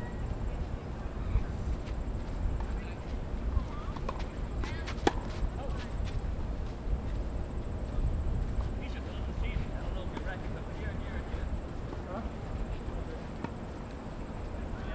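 Outdoor ambience of a tennis court: a steady low rumble on the microphone with faint, distant voices, and one sharp crack about five seconds in.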